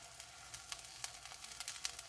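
Minced garlic sizzling faintly in hot oil in a pan, with a few small crackles.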